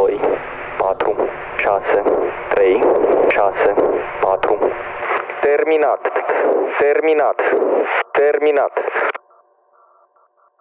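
A voice filtered thin like a radio transmission, used as a sample in an electronic track, cutting off suddenly about nine seconds in. It is followed by faint, evenly pulsing tones.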